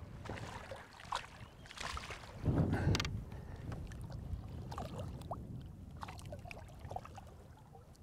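Wind and water lapping against the side of a bass boat, with scattered small splashes and ticks as a hooked smallmouth bass is brought alongside and landed by hand. A louder low rumble comes about two and a half seconds in.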